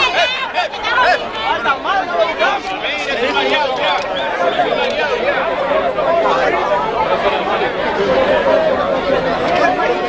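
Crowd chatter: many people talking at once, their voices overlapping with no single speaker standing out.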